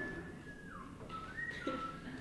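A person whistling a few notes. A long held note slides down in pitch, then shorter notes step up and down.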